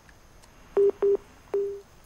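Three short beeps of one low pitch on a telephone line, the third longer and trailing off: the phone link to the correspondent has dropped.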